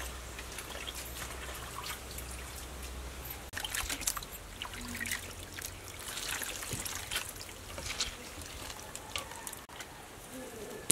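Water splashing and trickling as hands wash shredded mushrooms in a metal basin, squeezing handfuls so the water runs back out into the basin in small irregular splashes.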